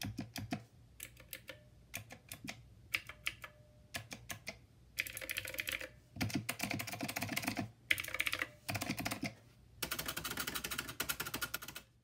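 MakeID Q1 thermal label printer printing a label. A few scattered clicks come first. Then, from about five seconds in, it prints in four runs of rapid, typewriter-like clicking, each broken off by a short pause.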